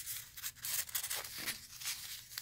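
Paper tag sliding into a paper envelope pocket in a journal: a quick run of short paper rustles and scrapes.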